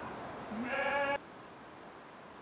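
A single sheep bleat, about two-thirds of a second long, that cuts off abruptly.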